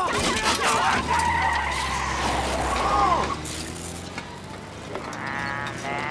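A small car's engine running and pulling away with a tyre squeal, after a clatter as the drive-thru speaker box is torn off. About five seconds in, a drawn-out call with a rising pitch begins.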